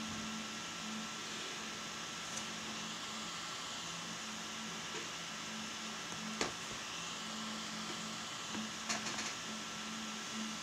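Steady hiss and low hum of a quiet room picked up by a desk microphone, with a faint steady high tone. A small click comes about six seconds in, and a short cluster of clicks near the end.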